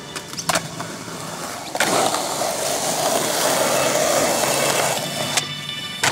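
A sharp clack about half a second in, then skateboard wheels rolling on concrete for about three and a half seconds, a steady rumble that starts and stops abruptly.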